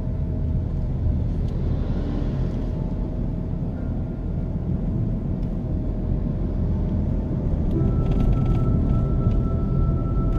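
Steady low rumble of a car driving, heard from inside the cabin, with music playing along with it.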